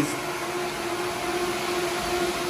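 Cooling fans of running HPE ProLiant DL580 Gen9 rack servers: a steady rushing whir with a constant low whine held under it.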